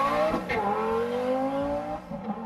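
A car engine accelerating hard under full throttle. Its pitch climbs, drops sharply about half a second in at an upshift, then climbs again in the next gear.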